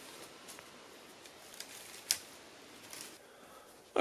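Faint crackling and rustling of dry sticks and forest-floor debris being moved through and handled, with one sharper click about two seconds in.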